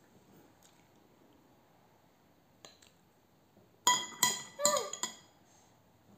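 A quick run of sharp clinks with a short ringing tone, about four seconds in and lasting about a second: a spoon knocking against a bowl while a toddler eats.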